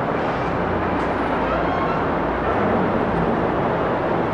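Steady background noise with a low hum under it, even in level throughout.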